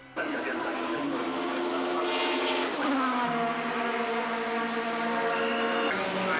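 Formula 3 race car's four-cylinder engine starting up suddenly and revving, its pitch climbing about two to three seconds in, then running at steady high revs.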